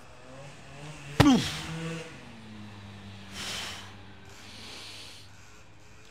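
Heavy canvas sandbags, 175 lb in all, dropped onto a concrete slab: one loud thud about a second in, with a grunt from the lifter as they land. Then two long, heavy exhales as he recovers.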